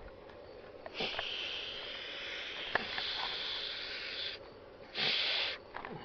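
Air blown by mouth through an automotive A/C thermal expansion valve, hissing as it passes: the valve is open and not stuck. There is one long blow of about three seconds, then a short, louder one about half a second later.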